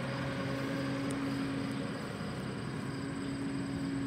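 A steady low engine hum. Its lowest drone drops away about two seconds in while a slightly higher drone carries on.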